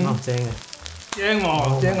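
A man speaking Cantonese, with the faint crackle of noodles frying in a wok underneath.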